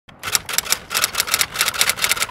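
Typewriter keys clacking in quick runs of about eight strikes a second: a typing sound effect.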